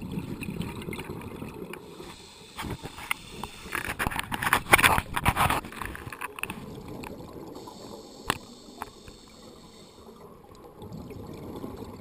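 Scuba diver breathing through a regulator, heard underwater through the camera housing: a low bubbling exhale, a louder hissing inhale around four to six seconds in, and bubbling again near the end, with a few sharp clicks.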